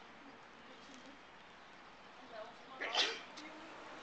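Faint outdoor ambience with distant voices, broken by one brief loud noise about three seconds in.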